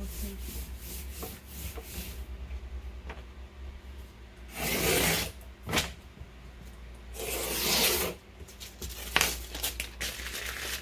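Hands rubbing and smoothing a sheet of transfer tape down over cut vinyl lettering. Quick rubbing strokes come first, then two longer, louder swishes of the sheet, one about halfway through and one near the end.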